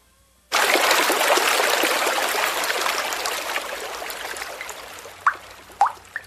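Running water that starts suddenly about half a second in and thins out steadily, leaving a few single drips near the end: a water sound effect in which flowing fresh water dwindles to drops, standing for water growing scarce.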